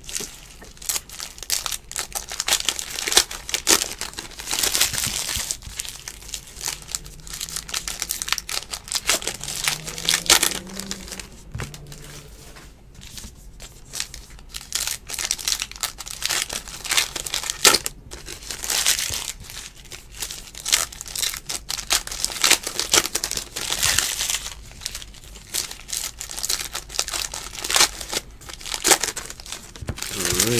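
Trading card pack wrappers crinkling and tearing as packs are ripped open, with cards rustling as they are handled and stacked. The rustle comes in irregular bursts throughout.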